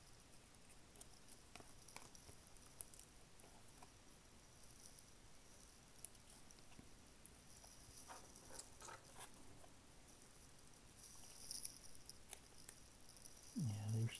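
Faint rustling and light clicks of a small stack of trading cards being fanned and slid apart by hand. The cards are sticking together, which is why they are being worked apart. The rustling gets busier past the middle.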